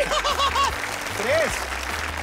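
Studio audience applauding, with a quick run of short shouts in the first second and one more shout about a second and a half in.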